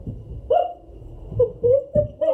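A girl's short, wordless vocal sounds, hiccup-like: one sudden burst about half a second in, then a quick run of them near the end, with low thumps beneath.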